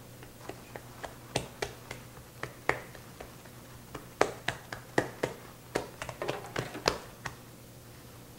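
Hands patting and pressing bread dough flat on a floured granite countertop: a quick, irregular run of slaps and taps, busier and louder in the second half, stopping shortly before the end.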